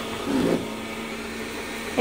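Robit V7S Pro robot vacuum running with a steady hum, its suction motor and brushes working as it moves along the edge of a rug.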